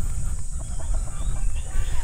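Roosters clucking faintly over a steady low rumble.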